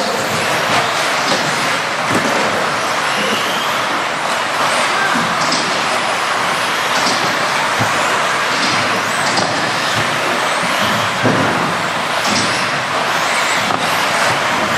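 A pack of 2WD modified electric RC buggies racing on an indoor turf track: a steady hiss of motors and tyres, with short high whines rising and falling as cars accelerate and brake. There is a thud about eleven seconds in, typical of a buggy landing off a jump.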